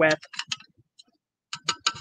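Metal spoon clinking against a clear cup of water while stirring in food colouring: a few light, irregular ticks, with a quick cluster near the end.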